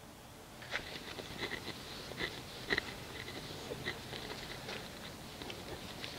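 A microfiber cloth wiping dried polish residue off a car's painted hood: faint, irregular rubbing and short scuffs of cloth on paint.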